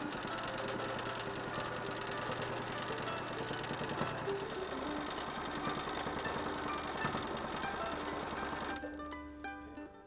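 Bernina Virtuosa 153 sewing machine running steadily as it stitches through a quilt sandwich, then stopping abruptly about nine seconds in. Soft background guitar music plays underneath.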